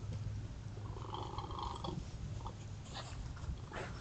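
Young raccoons foraging in grass: a short pitched call about a second in, then a few rustles and clicks near the end, over the trail camera's steady low hum.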